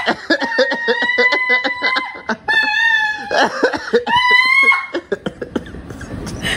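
A woman's high-pitched shrieking laughter: long squealing cries broken by rapid gasping laugh pulses, an outburst of excited joy.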